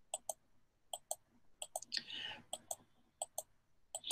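Computer mouse button clicked repeatedly, about six quick press-and-release double clicks spaced under a second apart, each stepping a font-size setting down one notch. A faint breath is heard about two seconds in.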